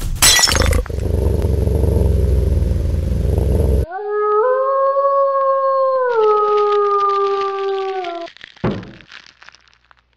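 A sharp crash, then a low rumble for about three seconds, then one long wolf howl that rises at its start, steps down in pitch about halfway through and ends about eight seconds in. This is an intro sound effect.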